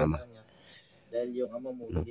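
Crickets trilling steadily at a high pitch through the night, under a man's voice that stops at the start and comes back in the second half.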